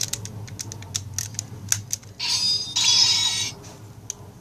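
Plastic clicks from a DX Sakanamaru toy sword being handled, then, about two seconds in, a loud electronic sound effect from the toy's small speaker in two parts, lasting about a second and a half.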